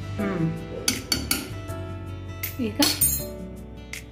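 A metal spoon stirring food inside a pressure cooker, clinking and scraping against the pot's side several times, loudest near the middle and about three seconds in. Background music with a voice plays underneath.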